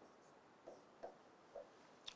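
Near silence, broken by a few faint, short strokes of a marker writing on a whiteboard.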